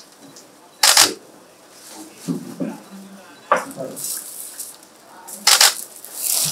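Camera shutters clicking in two short, rapid bursts, about a second in and again near the end, with low murmured voices in between.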